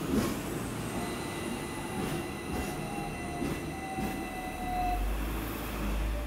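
Interior sound of a moving electric train: a continuous low rumble with a steady high whine and a few faint clicks, the rumble swelling near the end.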